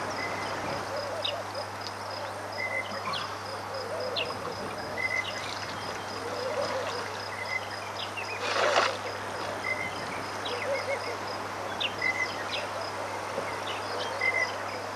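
Bushveld soundscape: several birds calling with short, sharp down-slurred notes and chirps scattered throughout, over a high, evenly pulsing insect trill and a steady low hum. A brief rush of noise a little past halfway is the loudest moment.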